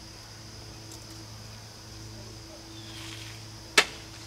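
A single sharp knock near the end, something set down on the camper's fold-out shelf, over a quiet steady low hum and a faint steady high tone.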